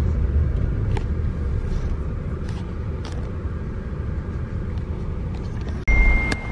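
Steady low rumble of a car on the move, engine and road noise heard from inside the cabin, with a few faint ticks; it cuts off suddenly just before the end.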